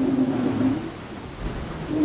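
Rushing water and wind noise aboard an IMOCA 60 racing yacht sailing fast through rough sea, spray and white water over the bow. A low steady hum fades out in the first second.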